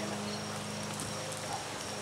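A steady low hum with a few faint clicks; the siren itself is not blowing.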